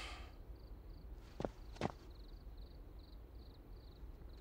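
Two footsteps on a hard floor, a little under half a second apart, about one and a half seconds in, after a brief rustle at the start. A faint, high chirping repeats in the background from about halfway through.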